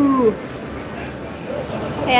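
A held pitched tone with overtones falls slightly and ends a moment after the start, then the steady background noise of a casino floor continues.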